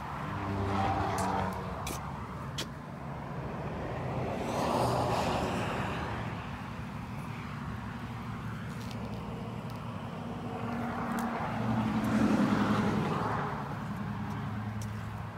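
Road traffic: vehicles passing by over a low, steady engine hum, the sound swelling and fading three times, about a second in, around five seconds in and near the end, with a few light clicks in between.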